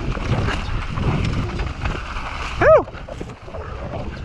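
Mountain bike rolling fast down a rough dirt trail: wind rushing over the rider's camera microphone and the bike rattling over the ground. About two-thirds of the way through, a short high yelp rises and falls in pitch.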